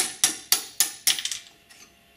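Hammer tapping a pin punch to drive a retaining pin out of a holster insert block: about six quick metallic taps, roughly four a second, each with a short ring, stopping about a second and a half in.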